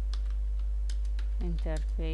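A handful of separate computer keyboard keystrokes, typing a short command, over a steady low hum.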